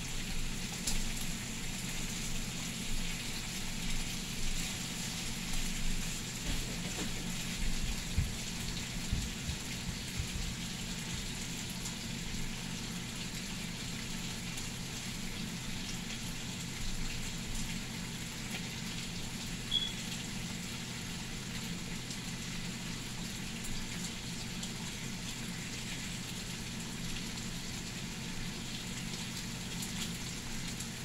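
Bacon sizzling in a stainless steel frying pan: a steady crackling hiss, with a few louder clicks in the first ten seconds.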